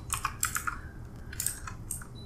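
Typing on a computer keyboard: a quick run of keystrokes, a short pause, then a few more single keystrokes.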